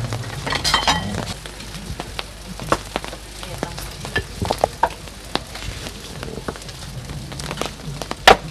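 Irregular sharp clicks, scrapes and crackles of a fork and hands tearing apart spit-roasted lamb in a metal roasting tray.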